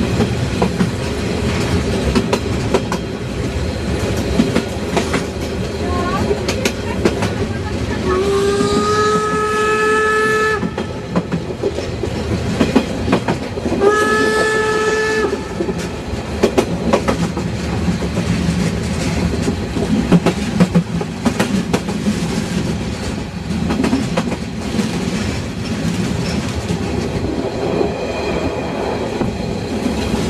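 A narrow-gauge Harzer Schmalspurbahn train heard from inside a coach at an open window, its wheels clicking over the rail joints as it runs. The locomotive's whistle sounds twice, about eight seconds in: first a long blast that slides up slightly as it starts, then a shorter one.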